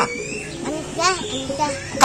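Speech: a man and a child talking, the words unclear.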